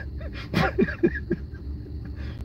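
A man laughing quietly in a few short chuckles, starting about half a second in.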